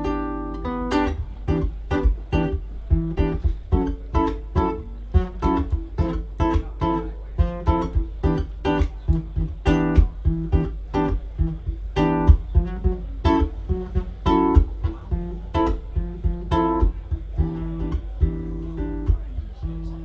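Solo cutaway classical guitar playing an instrumental passage, a steady run of picked notes and strummed chords with several attacks each second.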